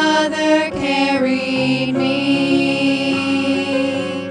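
Four women singing a gospel song in harmony, settling into a long held note about a second in.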